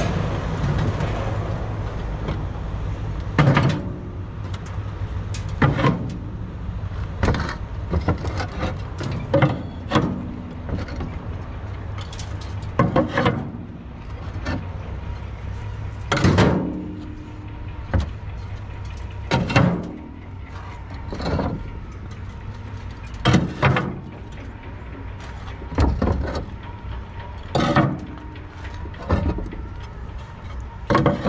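Roof tiles clacking as they are set down one at a time onto stacks in a steel wheelbarrow, a knock every one to two seconds, each with a short ring. A steady low rumble runs underneath.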